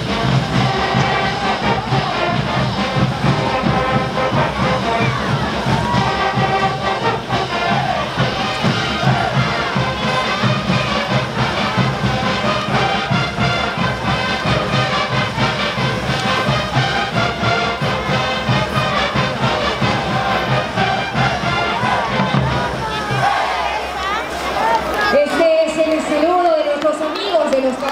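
Brass band playing caporales music with a steady drum beat over crowd noise; the music stops shortly before the end and voices take over.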